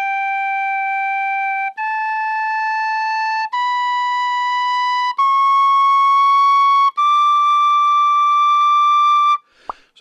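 Lír D tin whistle (chrome-plated solid brass) played as five long held notes, each about a second and a half with a short break between, climbing step by step up the first octave from F sharp to the top C sharp. It is a tuning check, and the first-octave notes sound in tune.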